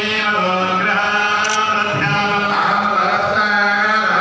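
Priests chanting mantras together in a steady, continuous recitation, several voices overlapping on a sustained held pitch.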